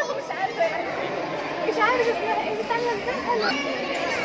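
Overlapping chatter of several people's voices, with no other distinct sound.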